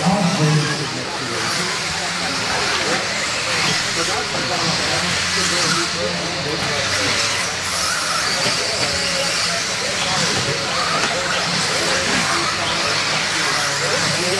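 Several electric 1/10-scale modified RC buggies racing on an indoor dirt track: a steady, hissing blend of motor whine and tyres on dirt, with indistinct voices in the background.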